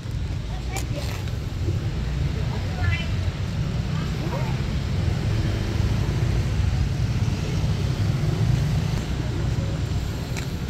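Outdoor ambience of a steady low rumble, with faint scattered voices from the assembled crowd of schoolchildren.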